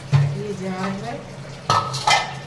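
Steel kitchen utensils being handled, scraping and clattering, with a sharp metallic clank that rings briefly near the end.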